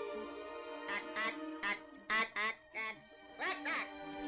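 A Martian speaking in its squawky, duck-like "ack ack" alien voice: about eight short squawked "ack" syllables in three quick clusters, over steady film-score music.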